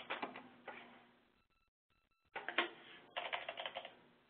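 Typing on a computer keyboard: rapid keystroke clicks in two bursts, with a pause of about a second between them.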